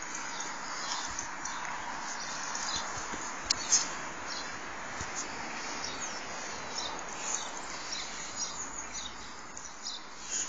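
Steady outdoor background hiss with short, high chirps scattered through it, the loudest two close together about three and a half seconds in.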